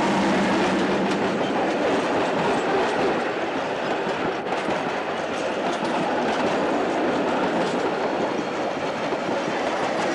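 Diesel-hauled passenger train passing close by. The locomotive's engine hum drops away at the start, and the carriages then roll past with a loud, steady rumble and clatter of wheels on rail.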